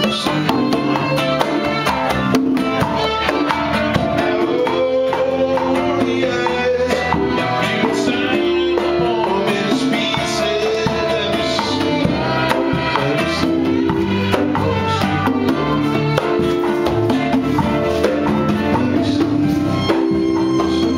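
Small acoustic band playing live: violin, keyboard, acoustic guitar and hand percussion with cymbals, over a steady beat.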